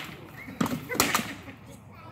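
Armoured sparring: sword blows striking a shield and armour. There is a knock at the start, a heavier thud about half a second later, and two sharp cracks close together about a second in.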